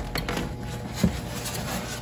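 Hands handling the lid of a styrofoam egg incubator: a few light clicks and rubs, then a brief knock about a second in, over a steady low hum.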